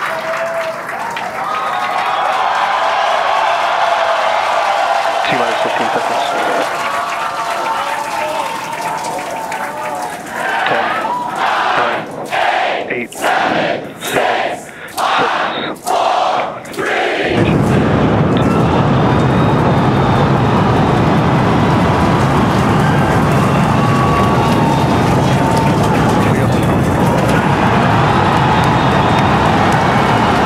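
A crowd of voices, then counting down together about once a second. A few seconds before liftoff this is suddenly overwhelmed by a loud, steady, deep roar: the Super Heavy booster's Raptor engines igniting at the launch of the first Starship flight test.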